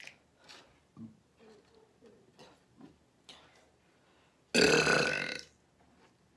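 A woman's loud burp lasting about a second, about four and a half seconds in.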